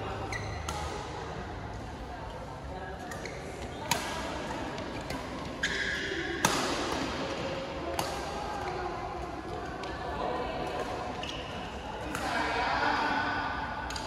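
Badminton rackets striking a shuttlecock during a rally: sharp cracks a second or two apart, the loudest about six and a half seconds in. Short squeaks of shoes on the court floor and voices from around the hall come between the hits.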